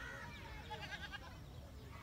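Wind rumbling on the microphone, with faint distant animal calls: short chirps and a quick quavering call about a second in.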